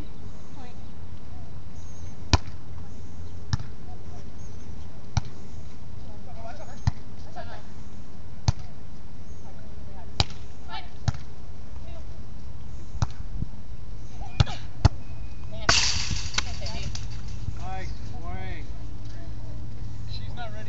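Beach volleyball rally: sharp slaps of hands and forearms striking the volleyball, about ten contacts one to two seconds apart, the loudest two close together late on, followed by a short louder rush of noise.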